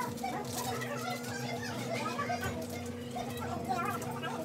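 Children's voices, talking and calling out at play, over a steady low hum.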